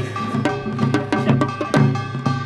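Korean traditional percussion playing a fast, steady rhythm: drum strokes several times a second, with a gong ringing over them.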